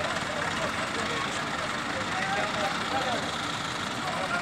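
Diesel engines of mobile hydraulic cranes running steadily while holding a lifted load, with voices in the background.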